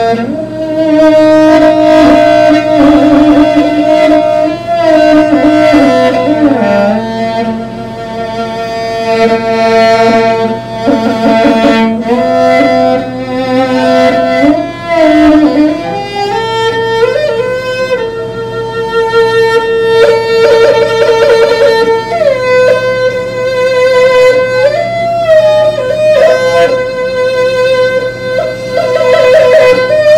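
Morin khuur (Mongolian horsehead fiddle) played solo with a bow: a slow melody with sliding notes and vibrato. The tune sits in a lower register for the first half and moves up higher about halfway through.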